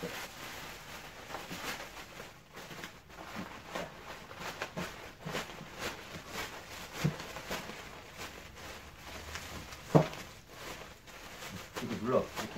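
Plastic bubble wrap being handled and pressed, crinkling and rustling with many small scattered crackles, and one louder sudden thump about ten seconds in.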